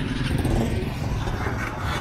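Street traffic: motorcycles and cars passing close by, their engines making a steady low rumble.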